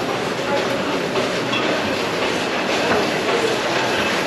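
Steady, loud street din with faint voices in the background.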